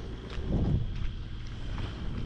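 Wind buffeting the camera microphone as a low, gusty rumble, with a stronger gust about half a second in.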